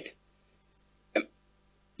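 A man's speech breaks off into a pause, with one short vocal sound from him about a second in.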